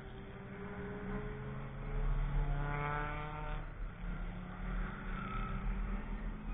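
A track-day car's engine accelerating on the circuit, its pitch climbing steadily for about three and a half seconds, then dropping abruptly before it pulls again, growing louder as it comes closer.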